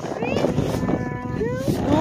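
A person's voice calling out with sliding, rising pitch, holding one steady note in the middle, over a rough rushing noise.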